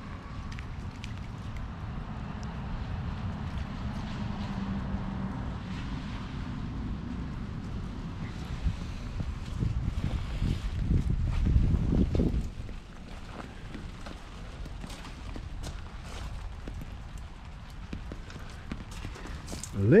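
Footsteps of a person walking across a soggy yard, over a steady low rumble on the microphone that swells for a few seconds just past the middle.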